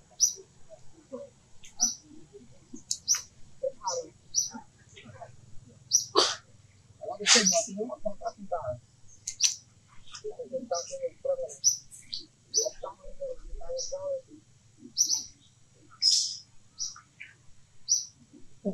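Forest birds chirping: short high chirps repeating about once a second, with two louder, sharper calls about a third of the way in.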